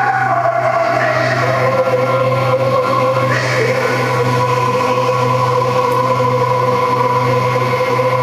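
Electronic ambient drone music played live from a tablet: several sustained tones layered over a steady low hum, shifting slightly in pitch early on, with a brighter layer coming in about three seconds in.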